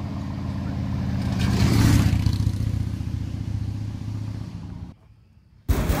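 A car driving past: engine and tyre noise builds to its loudest about two seconds in, then fades away, and the sound cuts off abruptly near the end.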